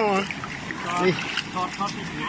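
Steady low wash of shallow river water flowing around granite boulders, under a voice that trails off at the start and two brief faint voice fragments.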